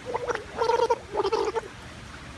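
A young girl's voice sounding with her mouth at the water line of a swimming pool: a few short, wavering sounds over the first second and a half.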